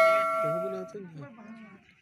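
A single bright metallic ring, like a struck bell, dying away over about a second, with a faint voice underneath.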